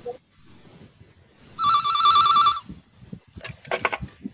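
Electronic telephone ringing, one warbling trill about a second long in the middle, the signal of an incoming call about to be answered.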